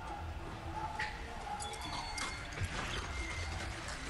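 Soundtrack of an anime episode playing: low background music under a steady low rumble, with scattered short clicks and knocks.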